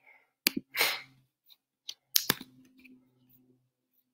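A few sharp clicks and a short breathy exhale close to a microphone, with a faint low hum that comes and goes.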